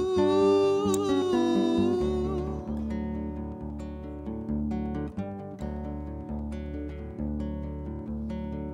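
A man's voice holds a long, wavering sung note that ends about two seconds in. After that, a steel-string acoustic guitar plays on alone as an instrumental passage, its notes picked or strummed at an even pace of about two a second.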